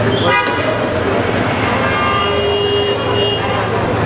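Vehicle horns over steady traffic noise: a short toot about a quarter second in, then a longer steady horn note from about two seconds in that lasts just over a second.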